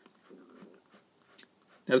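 Faint scratching of a 0.2 mm fine-liner pen drawing short hatching strokes on sketchbook paper, a few quick strokes in the first second and another near the middle.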